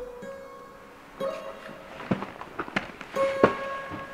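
Background music: slow, sparse plucked guitar notes, each ringing on after it is struck.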